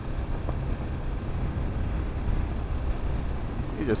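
BMW G 310 GS motorcycle riding on a gravel road: the single-cylinder engine running steadily, mixed with a low, even rumble of tyres on gravel and wind.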